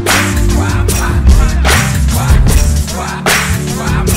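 Instrumental beat with no vocals: a deep bass line under a melody, cut through by sharp cracking hits roughly once a second.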